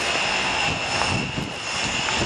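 A steady machine drone in a workshop, with a high, even whine running through it.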